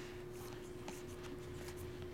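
Glossy Topps Finest baseball cards sliding and rubbing against one another as a hand flips through a pack, faint soft rubs and ticks over a steady low hum.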